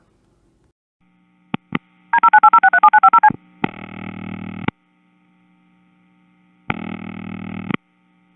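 Captured analog phone line carrying caller ID sent as DTMF before the first ring. Two clicks come first, then a quick run of about a dozen two-tone DTMF beeps, then two ring-signal bursts about a second long each, roughly two seconds apart.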